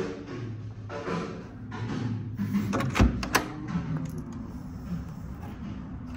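A door being opened: two sharp knocks close together about halfway through, the first with a dull thud, as the latch releases and the door swings, over a steady low hum.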